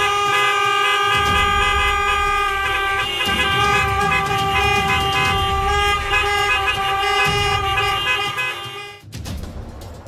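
Car horns held down together in one long, unbroken blare from a queue of stopped cars, cutting off abruptly about nine seconds in.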